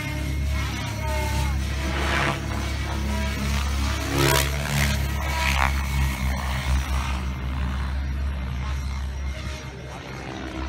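Radio-controlled 3D aerobatic helicopter flying competition manoeuvres, its rotor sound swelling and fading as it sweeps across the field, loudest about four seconds in. A steady low rumble runs underneath.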